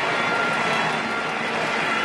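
Stadium crowd cheering: a steady, even noise with no single voice or clap standing out.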